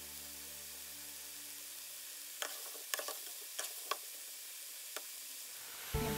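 Batter-coated baby corn deep-frying in hot oil: a steady sizzle, with a few sharp clicks between about two and four seconds in and one more near five.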